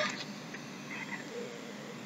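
Quiet room with steady background hiss and no clear sound event; a faint, brief murmur about a second in.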